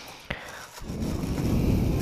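Cardboard box and plastic packaging being handled as a parcel is unpacked: a short click about a third of a second in, then steady rustling from about a second in.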